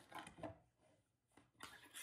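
Near silence, with a few faint, soft rustles of ribbon strips being handled near the start and again near the end.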